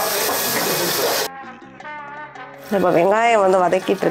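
Chopped shallots and curry leaves sizzling in hot oil in an aluminium pot as a ladle stirs them; the hiss cuts off suddenly a little over a second in. Background music follows, with a singing voice coming in about halfway through.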